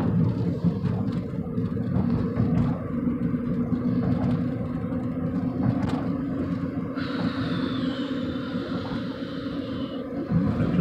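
Steady road and engine noise heard inside a moving car's cabin. From about seven seconds in, a faint high whine slowly falls in pitch.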